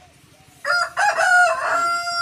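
A rooster crowing. The loud crow starts about half a second in and ends on a long, held note.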